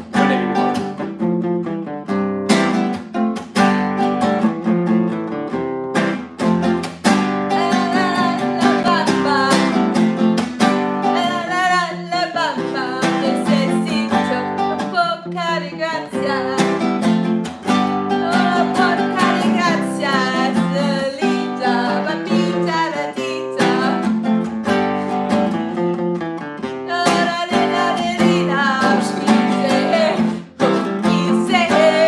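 Acoustic guitar strummed, going round the same repeating chord progression, with a voice singing along from a few seconds in.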